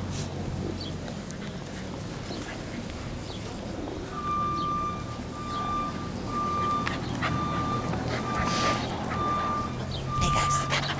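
A vehicle's reversing alarm, starting about four seconds in: a steady high-pitched beep repeating a little faster than once a second over a low engine hum.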